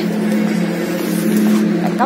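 A motor vehicle engine running steadily, a constant low hum with some road or traffic noise over it.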